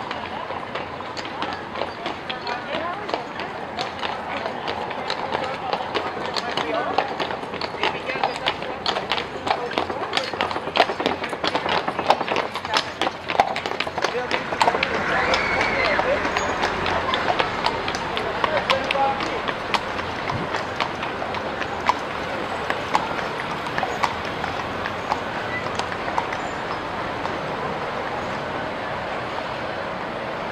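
Horse's hooves clopping on cobblestones as a horse-drawn carriage passes. The clops grow louder toward the middle and then fade, over the chatter of people on the street.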